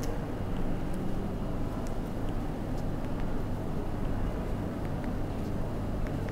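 A steady low hum and rumble of room background noise, with a few faint clicks.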